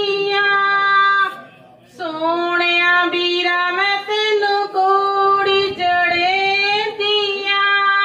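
A woman singing a Punjabi song solo into a microphone, with no accompaniment, in long held, gently wavering notes. She breaks off briefly for breath about a second and a half in.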